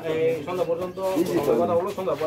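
Several people's voices talking over one another in a group, with no one voice clearly leading.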